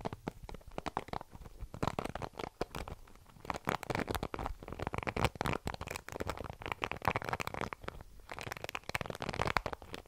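Fingertips running over the bristles of a paddle hairbrush held close to a microphone: dense crackly scratching that swells and eases in waves, loudest through the middle and again near the end.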